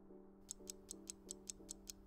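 Countdown-timer ticking sound effect, sharp clock-like ticks about five a second that start about half a second in, over a soft sustained chord of background music.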